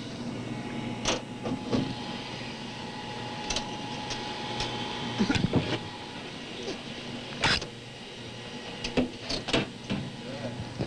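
Metal cover panel being handled and lifted off the lower cabinet of a videotape recorder console: a series of irregular clicks, knocks and scrapes, loudest about halfway through. Underneath is the steady hum of the running machine.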